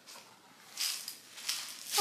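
A clear plastic compartment box of sprinkles being handled, with brief, faint rustling rattles: one about three-quarters of a second in and a fainter one around a second and a half.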